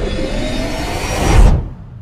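A logo-intro sound effect: a rising whoosh over a deep rumble, swelling to a loud low hit about a second and a half in, then cutting off.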